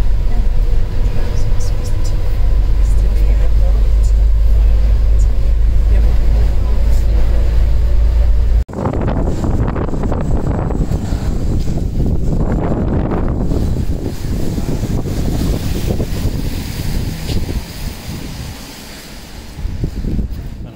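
Loud, steady low rumble inside a top-deck bus running along the concrete track of a guided busway. About nine seconds in it cuts off abruptly. Rougher outdoor wind noise on the microphone follows, dropping lower near the end.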